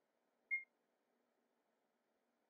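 Near silence, broken about half a second in by a single brief high-pitched ping.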